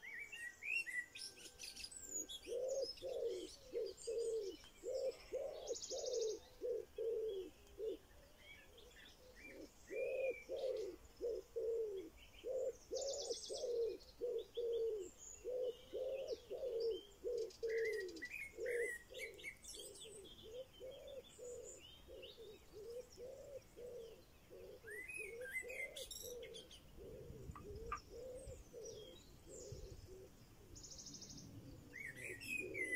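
Wild birdsong: a low cooing note repeated about twice a second through most of the clip, with higher chirps and twittering from other birds over it and a couple of short buzzy high trills.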